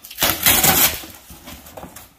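Cardboard box flaps being pulled open by hand: a loud papery rustling and scraping burst of under a second near the start, then fainter handling of the cardboard.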